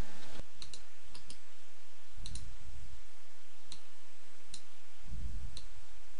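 Computer mouse clicks, single and in quick pairs, scattered over a steady background hiss, with a few soft low thumps.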